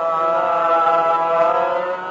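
Male Hindustani classical vocalist holding one long sung note in Raag Darbari, on an old live concert recording.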